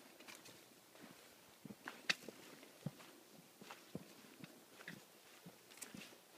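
Footsteps on a dirt trail strewn with dry leaves: faint, irregular crunches and scuffs, with one sharper click about two seconds in.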